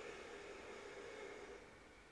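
A slow, faint inhale through one nostril, the other held shut by the fingers, in alternate-nostril breathing (nadi shodhana): a soft airy hiss that fades out near the end.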